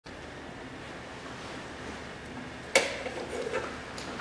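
Quiet steady background noise, then a single sudden knock about three-quarters of the way in, ringing briefly as it dies away.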